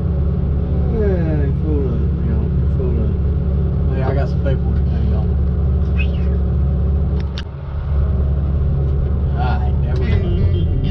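Steady low drone of a knuckleboom log loader's diesel engine, heard from inside the cab, with a few falling tones in the first few seconds and a couple of sharp clicks about seven seconds in.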